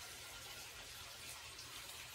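Faint, steady background hiss with a low rumble beneath: room tone, with no distinct event.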